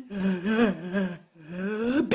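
A woman's voice making wordless, drawn-out moaning sounds: two long sounds with wavering pitch and a short break between them.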